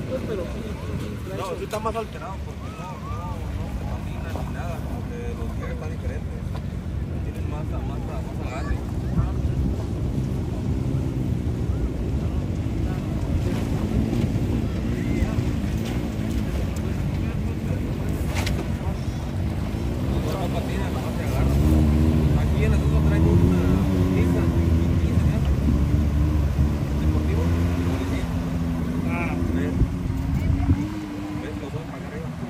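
Off-road pickup engines running and revving as a pickup truck fords a shallow river, with water sloshing. The engine sound grows louder about two-thirds of the way in, its pitch rising and falling with the throttle.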